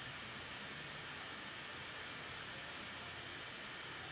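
Faint, steady hiss of room tone, with no distinct sounds.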